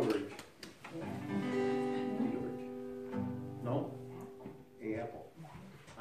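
A few quiet, sustained string-instrument notes held together, ringing steadily from about a second in until nearly five seconds, with faint voices underneath between songs.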